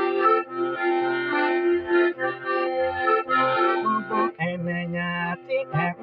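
Piano accordion playing: sustained treble notes over a bass note pulsing about twice a second, with a longer held low note about four and a half seconds in.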